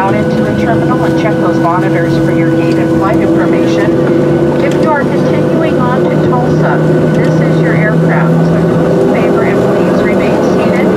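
Cabin drone of a Boeing 737-700 taxiing with its CFM56 engines at idle: a steady hum with several held tones, one rising slightly near the end. Passengers chatter over it.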